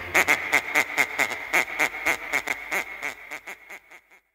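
A rapid series of duck quacks, about four a second, dying away toward the end over a faint steady high tone.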